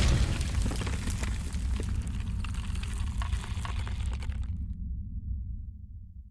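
Logo-intro sound effect: an explosion-like impact that decays into a long crackling, rumbling tail. The crackle cuts off about four and a half seconds in, and a low rumble fades out near the end.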